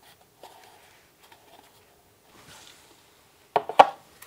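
Hands handling a plastic camera enclosure, with faint rubbing and small clicks, then a short cluster of sharp plastic knocks near the end as the case is set down on the cutting mat.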